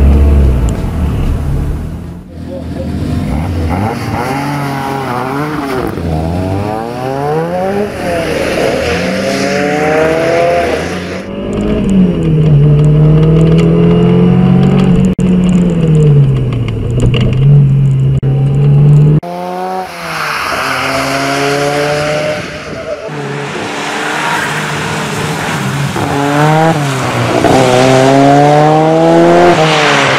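Ford Sierra RS Cosworth's turbocharged four-cylinder engine accelerating hard under racing load, its pitch climbing and then dropping at each gear change over and over, heard mostly from inside the cabin. The sound changes abruptly several times where one clip cuts to the next.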